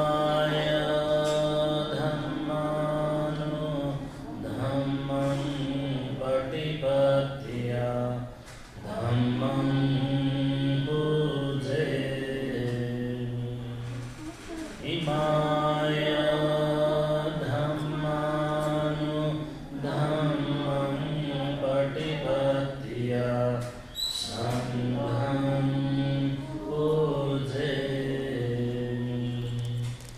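A Buddhist monk chanting devotional verses in a steady, near-monotone male voice. Long phrases are broken by short pauses for breath every few seconds.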